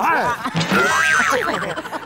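Several people shouting and laughing at once, their voices sliding up and down in pitch, with one high voice held for about half a second in the middle.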